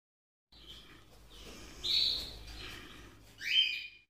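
A few high bird chirps over a faint low rumble, the loudest about two seconds in, and a rising call near the end.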